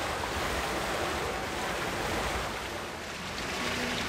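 Steady rushing water noise of an indoor swimming pool hall.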